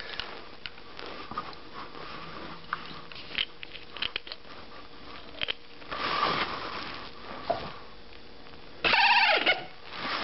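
Small clicks and taps of a glass vial and its plastic cap being handled under a capper's chuck, with a louder stretch of handling noise about six seconds in. A short vocal sound comes near the end.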